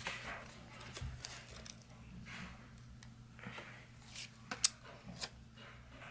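Faint rustling and a few light clicks of sticker paper being peeled, folded and pressed down by hand onto a planner page, over a steady low electrical hum.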